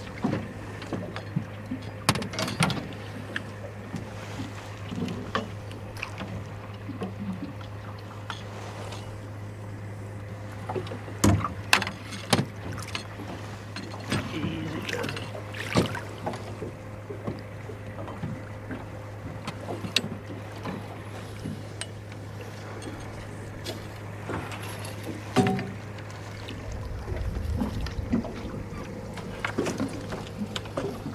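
Gear knocks and clatters on a fishing boat as a blue catfish is played at the side and netted, with a burst of low rumbling near the end as the fish comes aboard in the landing net. Under it all runs the steady low hum of the bait tank's pump, which is described as roaring.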